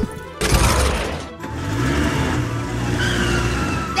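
Vehicle sound effect for a toy truck: a sudden loud burst of noise about half a second in, then a steady rushing run, over background music.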